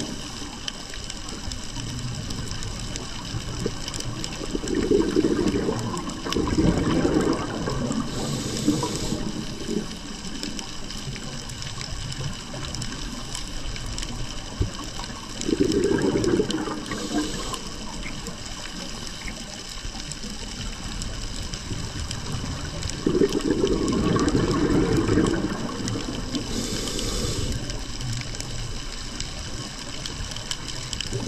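Scuba diver breathing through a regulator underwater: three loud, bubbly exhalations, each followed by a short hiss of inhaling, over a steady background hiss.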